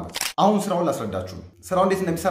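A man speaking in Amharic, with a short pause about three-quarters of the way through.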